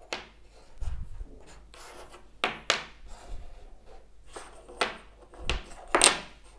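Small wooden blocks being handled on a wooden tabletop: several sharp wooden clicks and knocks as blocks are picked up, set down and knocked together, with some sliding and rubbing between them.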